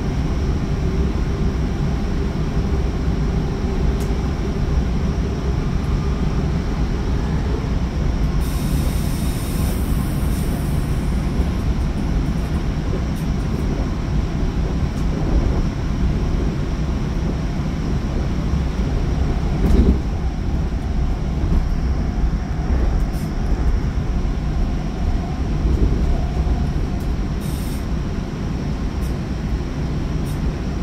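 Steady rumble of steel wheels on rail heard from inside a Bombardier bilevel cab car of a Sounder commuter train running at speed, with scattered short clicks and a brief high hiss about nine seconds in.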